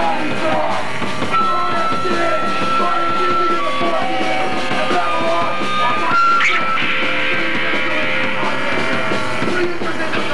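Punk rock band playing live: distorted electric guitar, bass and drums, with held guitar notes over the driving beat.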